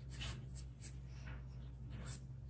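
Charcoal pencil scratching on drawing paper in short shading strokes, about two or three a second, over a low steady hum.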